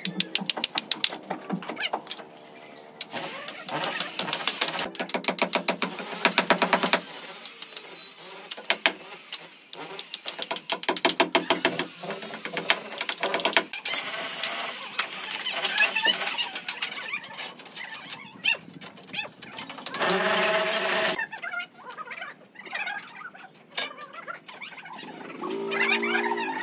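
Building-site work sounds: knocks and clatter of timber boards and steel scaffolding being handled, with a motor running at times.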